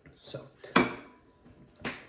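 A drinking glass set down on a wooden table: a sharp clink about three quarters of a second in with a brief faint ring after it, and a second knock near the end.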